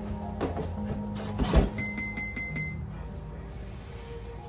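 A thump, then a quick run of about five short, high electronic beeps lasting under a second: a gym round timer signalling the end of a round.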